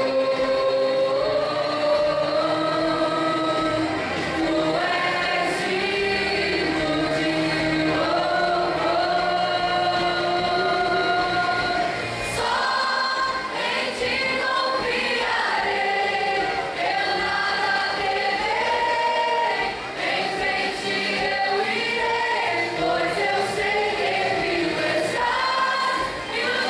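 Youth choir singing a Christian hymn together, with women's voices carried through handheld microphones, in a slow melody with long held notes.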